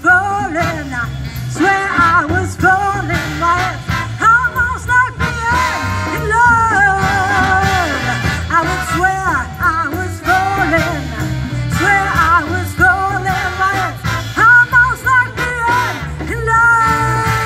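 A big band playing a swinging instrumental passage: saxophone and brass lines over bass and drums.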